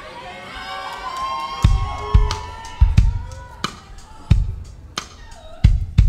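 A recorded song starts with held, slightly gliding pitched tones. A heavy kick-drum beat comes in about a second and a half in, hitting steadily roughly every two-thirds of a second.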